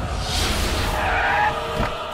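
A car skidding to a stop with its tyres squealing, a hard braking screech about a second and a half long.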